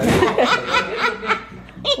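A woman laughing in a quick run of short bursts that fades out late on.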